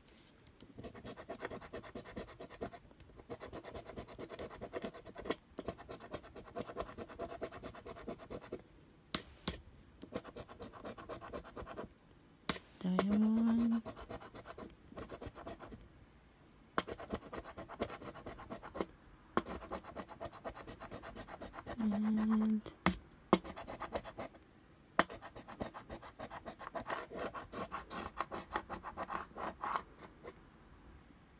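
A coin-shaped scratcher rubbing the silver coating off a paper scratch card in runs of fast scraping strokes, with short pauses between runs. A short hummed "mm" sounds twice, about halfway through and again later.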